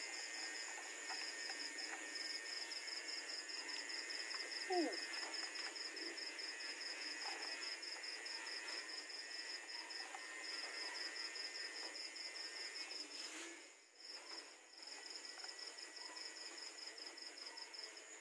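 Night insects chirping in a steady, fast, evenly pulsed high trill. The trill drops out briefly about fourteen seconds in, then resumes.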